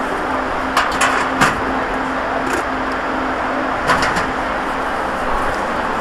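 Steady background noise with a low hum, broken by a few sharp clicks or knocks: a cluster about a second in and another around four seconds.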